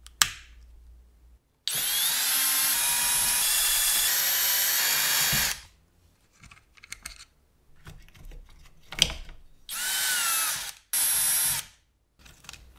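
A sharp snip of side cutters through a wire just after the start, then an electric power drill running in three bursts: one of about four seconds, then two short runs near the end.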